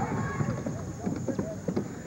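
Basketball arena sounds: crowd voices mixed with irregular knocks of the ball and players' feet on the hardwood court, about two a second.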